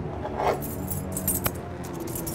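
A bunch of metal keys jangling as they are lifted out of a wooden box, with clinks about half a second in and again around a second and a half, over background music with sustained tones.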